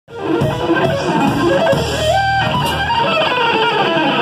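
Electric guitar, a Stratocaster-style instrument, played live: a fast lead line, with one note bent up and held about two seconds in, over a low bass-and-drum backing.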